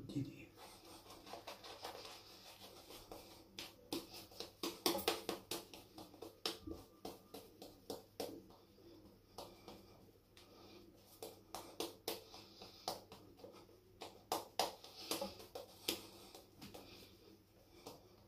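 Shaving brush scrubbing soap lather onto a stubbled face, a quick irregular run of soft wet brushing strokes.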